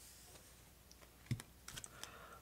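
A few light clicks of plastic game pieces being handled on a tabletop, one about a second in and a couple more near the end.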